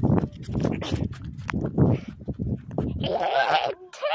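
Wind rumbling on a phone microphone, with handling knocks as the phone is carried. Near the end comes a short, bleat-like call.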